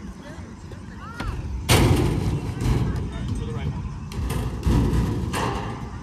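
Basketball thudding against a wooden backboard about two seconds in, then a long low rumble as it rolls back down the hoop-game wagon's return chute. A second, weaker thud and rumble follow near the end.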